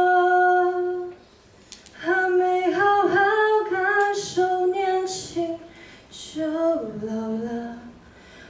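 A girl singing a slow Mandarin song unaccompanied into a handheld microphone: a long held note that breaks off about a second in, then after a short pause the sung phrases resume.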